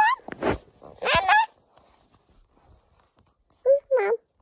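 A baby squealing and babbling close to the microphone in short bursts, each rising in pitch: a few in the first second and a half, then a pause, then two more near the end.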